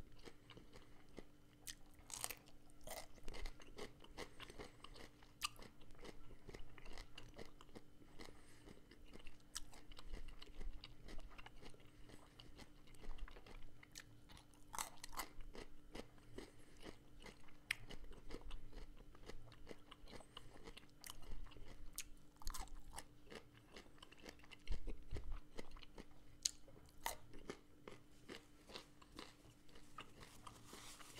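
Close-miked chewing of crunchy pickled vegetables, with many irregular crisp crunches and wet mouth clicks.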